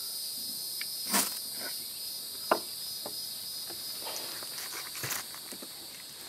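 A ferro rod scraped down into a bundle of resinous fatwood shavings, a short rasp about a second in that lights the tinder, then a few faint clicks and ticks as it catches and burns. Steady insect chirring runs underneath.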